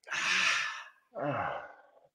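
A man's breathy sigh into a microphone, followed by a second, shorter voiced exhale that falls in pitch.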